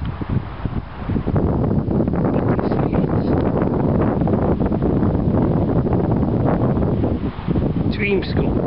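Wind buffeting the camera's microphone: a loud, low rushing noise that sets in about a second in and holds steady.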